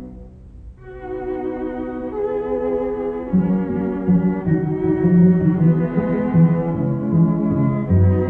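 String quartet playing classical chamber music. After a brief hush at the start, the music picks up again just under a second in, and the lower strings come in louder about three seconds in.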